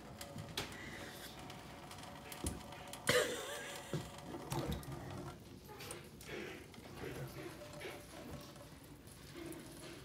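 Faint, steady trickle of water from a kitchen sink sprayer into a stainless steel sink while a cat tries to lap from the stream, with scattered soft clicks and taps.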